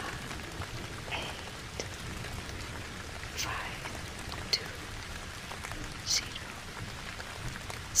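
Steady rain falling, with a few sharper single drop sounds scattered through it, the loudest near the end.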